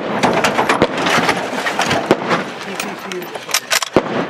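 Voices over a jumble of knocks and clatter from a shooter moving about in a pickup truck's cab with a lever-action rifle, with several sharp cracks close together near the end.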